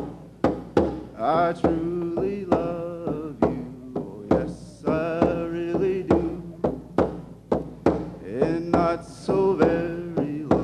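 A man singing a chant-like song over a steady hand-drum beat struck with a beater, about two to three strokes a second.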